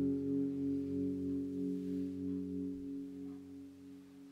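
Stratocaster-style electric guitar letting its final chord ring out, the held notes slowly fading away.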